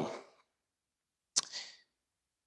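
The last word of a man's speech trails off into silence; about a second and a half in comes one sharp click followed by a brief hiss, picked up by the pulpit microphone.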